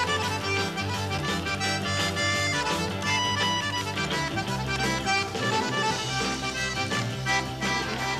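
Cajun button accordion playing an instrumental break over a live swamp-pop band, with bass and drums keeping a steady rock-and-roll beat.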